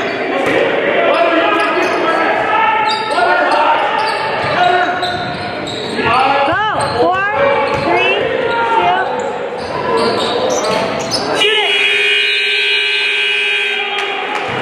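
Gym crowd voices and shouts with sneakers squeaking on the hardwood court, then a steady scoreboard horn that sounds for about two and a half seconds near the end as the game clock hits zero, signalling the end of the first quarter.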